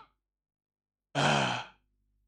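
A man's sigh: one breathy exhale with a faint falling voice under it, lasting about half a second and starting a little past a second in, close on a handheld microphone.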